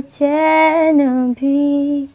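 A woman singing a slow melody, holding long notes in two phrases with a brief breath between them.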